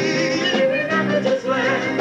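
A rock band playing live: electric guitars and drums, with a wavering high melodic line over the chords.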